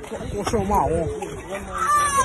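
Boys' voices shouting in a scuffle, heard through a phone recording, with a high drawn-out call near the end.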